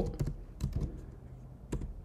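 Computer keyboard typing: a handful of scattered keystrokes in the first second, then a quick last pair near the end.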